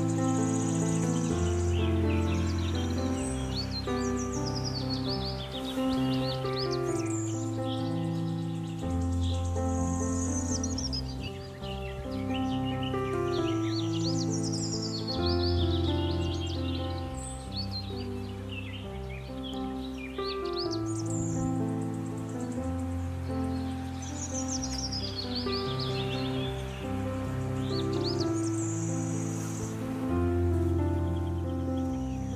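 Calm background music of slow, held chords, with birdsong chirping over it throughout.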